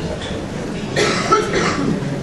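A person coughing: a sudden, loud, rough burst about a second in, lasting under a second, over a low murmur of a room.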